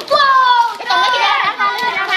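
Children's voices, high-pitched and excited, calling out and chattering without pause.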